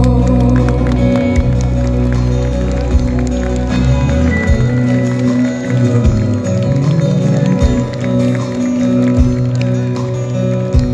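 Live band playing an instrumental passage without vocals on acoustic and electric guitars with drums and keyboard, amplified through a PA. The deepest bass notes drop out about halfway, leaving sustained guitar notes over low beats about once a second.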